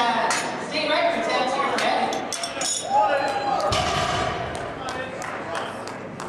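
Indistinct voices in a large hall, with a few sharp metallic clinks of barbell weight plates being handled, and a short dull thump about four seconds in.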